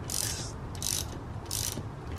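Ratchet wrench clicking in repeated back-strokes, three short bursts of clicks about 0.7 seconds apart, as it turns a fastener on the end of an inverted monotube coilover strut during reassembly.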